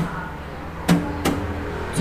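Acoustic guitar played with a percussive strumming pattern: three sharp slap-like taps on the strings, the first right at the start and two more close together about a second in, with a chord ringing on after the second tap.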